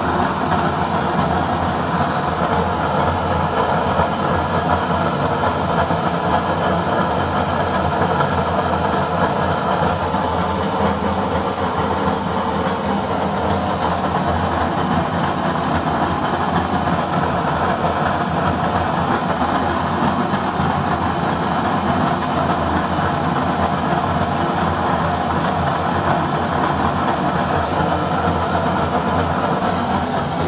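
Waste-oil burner stove running with a blue flame: a steady, even rushing noise of the blower-fed flame and its fan, unchanging throughout.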